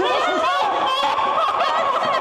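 Several people screaming and shrieking at once in panic, many high cries overlapping.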